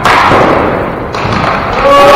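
A sharp impact thud echoing through a gymnasium at the start, then another knock a little over a second in, from ball hockey play on a hard gym floor.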